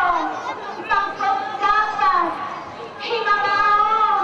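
A high-pitched voice speaking in long, drawn-out, sing-song phrases, over crowd chatter.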